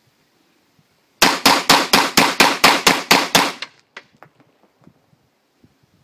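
Fort-12G gas pistol firing about ten 9 mm P.A.K. blank rounds in rapid succession, roughly four shots a second, the slide cycling each round without a stoppage. One light click follows the string.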